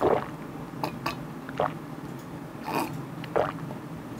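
A man gulping a drink from a metal bowl: about six separate swallows, spaced irregularly.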